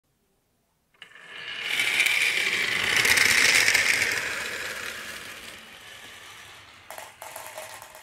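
A batch of marbles rolling and clattering down a marble run of wooden and plastic tracks. It starts about a second in, is loudest at two to four seconds, then thins out, with a few sharper clacks near the end.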